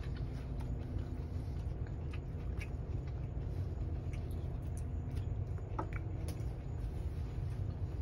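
Hands pulling pods out of a very ripe, soft jackfruit: faint sticky squelches and small clicks over a steady low hum.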